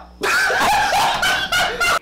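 Young men laughing and shrieking with excitement in a loud, high-pitched burst that starts a moment in and cuts off suddenly at the end.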